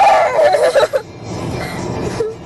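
A loud, high-pitched vocal outburst with wavering pitch lasting about a second, then quieter low road noise inside a moving car.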